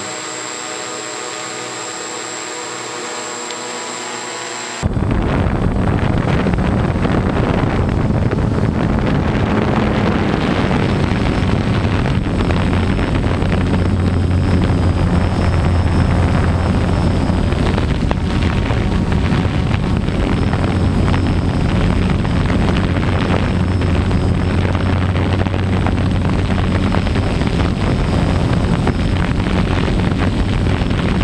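DJI F450 quadcopter's motors and propellers hovering, a steady hum of several even tones. About five seconds in it cuts abruptly to a louder, rougher rotor and wind noise with a strong low hum, as picked up close up by the camera on board the drone.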